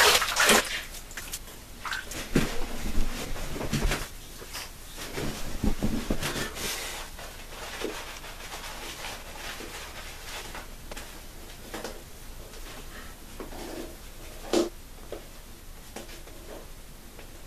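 Water splashed from a bathroom sink onto the face in a rinse: a few seconds of irregular splashing, then quieter rubbing as lather is worked back onto the face, with one sharp click near the end.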